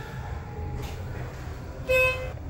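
Schindler hydraulic elevator's arrival signal: a single steady, buzzy electronic tone sounding near the end, over a low hum in the car as it reaches the floor.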